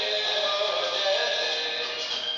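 A song with a sung vocal and backing music, played back through the Jcssuper Crome HD300 projector's built-in speaker.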